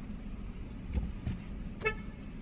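Steady low rumble of a car's engine and road noise heard from inside the cabin, with two low thumps about a second in and a very short car-horn toot near the end.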